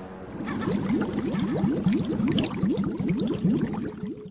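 Water bubbling: a rapid, dense stream of bubble gurgles, each a short rising blip, starting about half a second in as a low horn-like tone fades out.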